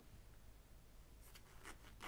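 Near silence: room tone with faint rustling as fabric is handled at the sewing table, and a few soft ticks in the second half.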